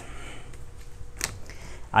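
Quiet room tone with a single sharp click about a second in.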